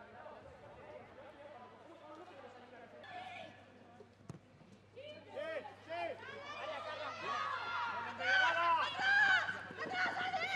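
Voices of players and onlookers at an outdoor football ground: low chatter at first, then from about five seconds in several voices shouting and calling, louder and more urgent as an attack builds toward the goal. A single sharp knock, like a kick of the ball, comes a little past four seconds in.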